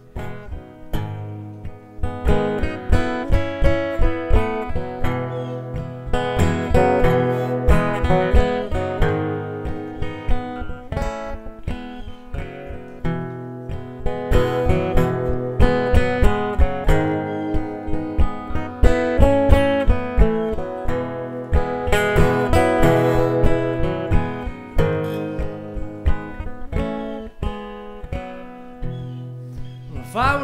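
A solo flat-top acoustic guitar, handmade and played with a capo, picked and strummed in a steady rhythm as the instrumental introduction to a folk song.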